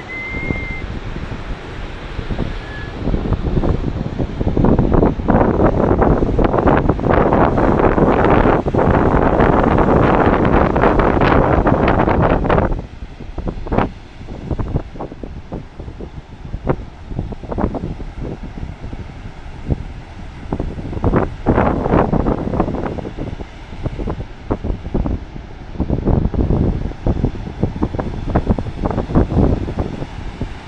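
Wind buffeting the microphone in heavy gusts over the steady wash of breaking ocean surf. The wind noise is loudest for the first dozen seconds, drops off suddenly, then comes back in shorter gusts.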